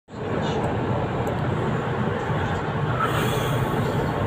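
Cabin noise of a Solaris Urbino 8.9 city bus under way: steady engine and road noise, with a brief hiss about three seconds in.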